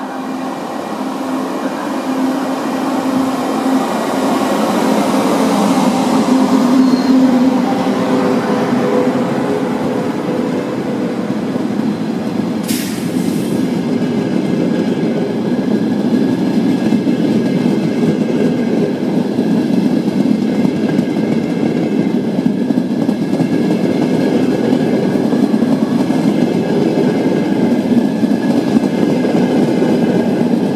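An RFI ETR 500 high-speed diagnostic test train passing through a station. The electric power car comes by with a steady whine over its rumble in the first several seconds. Then the carriages roll past with a long, even rumble and rattle over the rails, with a brief high squeak about a third of the way in.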